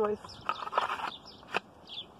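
A machete and its sheath being handled: a short clattering rustle about half a second in, then a single sharp click.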